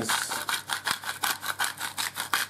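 Pink salt grinder being twisted by hand: a quick, even run of rasping grinding strokes, about six or seven a second.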